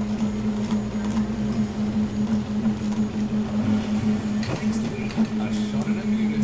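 3D printer running with a steady hum that wavers slightly, with faint talk behind it.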